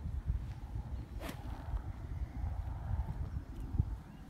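Low, gusty rumble of wind buffeting the microphone, with one sharp click about a second in.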